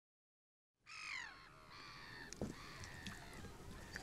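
Faint seabird calls that begin about a second in: a falling call first, then several shorter calls over a soft outdoor background.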